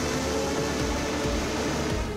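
Midget race cars' engines running at speed on a dirt track, a steady drone, under background music.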